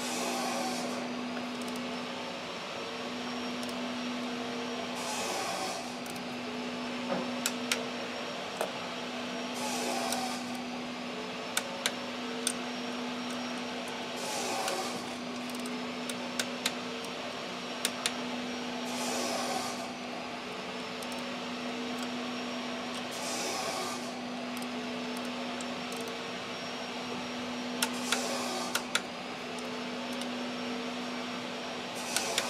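Sharp clicks in small clusters from a wrench tightening the throttle body's mounting bolts, over a steady workshop hum with a whooshing noise that recurs about every four and a half seconds.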